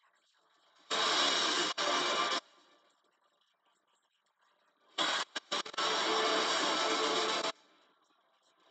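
Movie trailer soundtrack played back in two loud stretches, about a second and a half and then two and a half seconds long, each starting and cutting off abruptly with near silence between.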